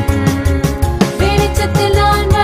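A Tamil nursery rhyme song: a singing voice over a bright backing track with a steady beat.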